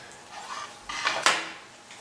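A built LEGO brick board handled and set down on a wooden tabletop: light plastic clatter with a sharper knock a little over a second in.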